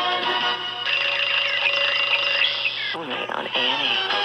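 Radio station-identification jingle: music with voices over it, pitch wavering through the middle, and a man's voice speaking near the end.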